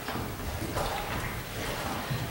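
Soft sloshing of water in a baptismal pool, with faint rustling, as a person wades down into it.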